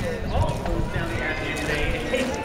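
Marching unit's shoes striking the pavement in step, a regular clacking, with spectators' voices around it.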